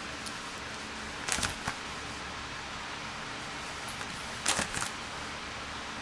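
Plastic-sleeved binder pages being turned: two short rustles, about a second in and again about three seconds later, over the steady hum of an electric desk fan.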